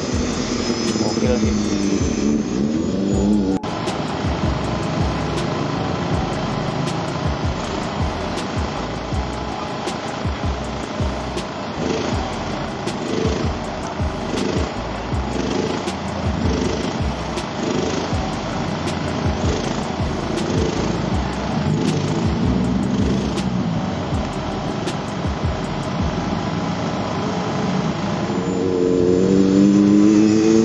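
Komatsu PC200 hydraulic excavator's diesel engine running under load while digging, its note rising and falling.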